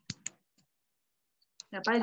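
Two short sharp clicks right at the start, then about a second of silence, then a woman's voice starting near the end.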